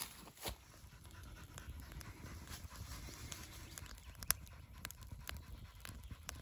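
Wood fire burning in a small metal camping stove: scattered sharp crackles and pops over a low rumble.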